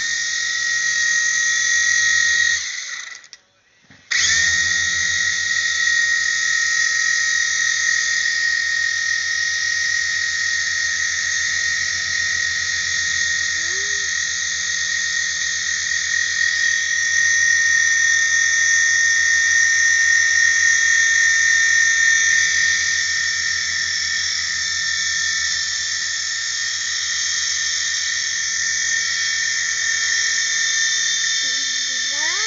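Electric motor and spinning rotor of a large RC toy helicopter in flight, running as a steady high whine over a buzzing hiss. The sound drops out for about a second and a half around three seconds in, then comes back and holds steady.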